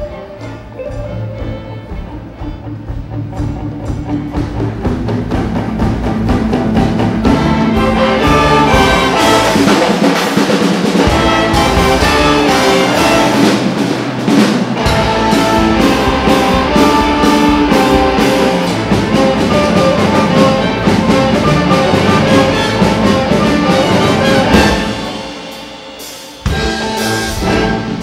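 Live symphony orchestra with brass, strings, electric guitar, timbales and drum kit playing together. The music swells over the first several seconds and stays loud, then falls away briefly near the end before the full band comes back in.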